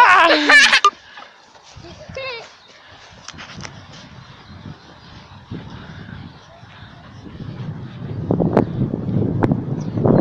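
Brief voice sounds in the first second and a short high child's vocal sound about two seconds in, then faint outdoor background. A low rumbling noise builds over the last two seconds.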